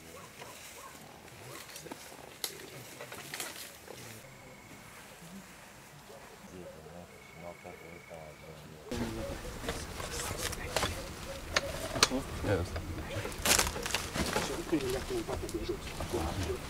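Indistinct voices of firefighters at work, faint at first. About nine seconds in they become louder and closer, mixed with sharp knocks and clatter from handling debris.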